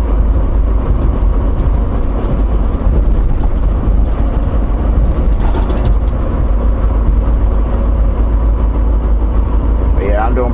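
Steady engine and road noise inside a Volvo semi-truck's cab cruising at highway speed: a deep, continuous rumble.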